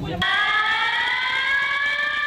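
Earthquake-drill warning siren starting abruptly and holding a steady wail that slowly rises in pitch: the alarm that signals the simulated quake and the start of the drill.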